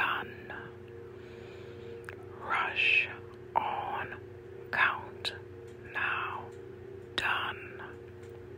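A voice whispering the phrase "rush on count now done" as a repeated chant, in short breathy syllables. A steady low hum runs underneath.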